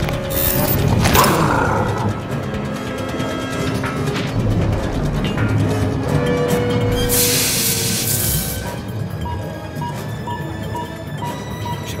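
Tense, dark orchestral film score with held tones, joined by film sound effects; a loud hissing burst of noise sounds about seven seconds in and lasts over a second.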